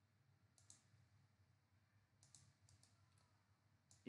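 Near silence broken by faint computer mouse clicks: a quick pair a little over half a second in, then a few more between about two and three seconds in.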